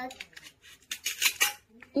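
Plastic toy knife cutting a toy melon apart along its hook-and-loop join: a few light ticks, then a short run of rasping rips about a second in as the halves pull apart.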